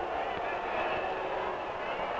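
Steady crowd murmur from a large arena audience, heard under the hiss of an old optical film soundtrack.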